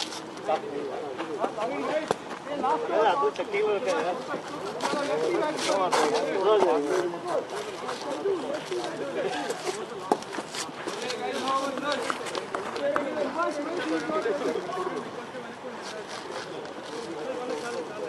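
Indistinct, overlapping men's voices talking and calling, with a few short clicks in the middle.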